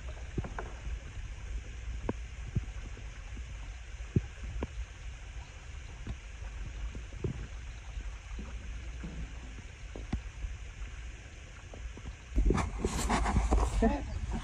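Quiet water movement around a kayak: small ticks and laps of water against the hull over low wind noise on the microphone. About a second and a half before the end, a louder rush of noise comes in.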